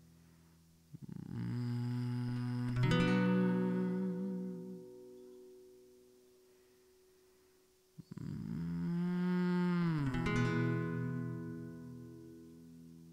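Acoustic guitar playing slow strummed chords that are left to ring: a phrase about a second in and another about eight seconds in, each with a second stroke and then fading away.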